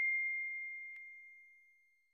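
The fading ring of a bell-like 'ding' sound effect from a subscribe-button animation: one steady high tone dying away over about a second and a half. A faint click is heard about a second in.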